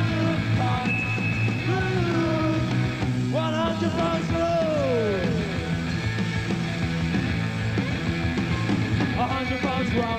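Punk rock band playing live, with electric guitars, bass and drums, heard on an old cassette recording. About three and a half seconds in, a high note slides downward.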